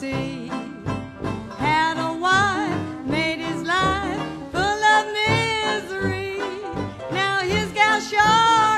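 Traditional jazz band playing a blues, with banjo in the rhythm under a lead melody line carrying a strong vibrato.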